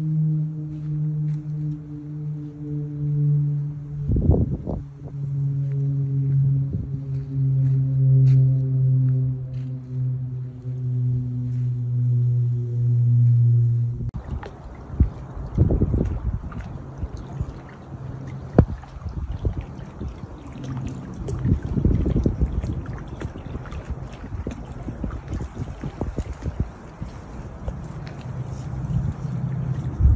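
A steady low hum with a slowly falling pitch that cuts off abruptly about halfway through, followed by wind buffeting the microphone in uneven gusts.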